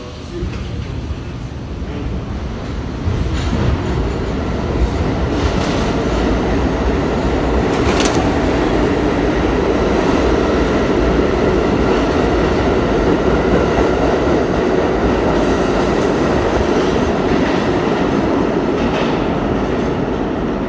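R32 subway train departing an underground station, its running noise building over the first few seconds to a steady loud rumble as the cars pass. Wheels clatter over rail joints, with one sharp click about eight seconds in.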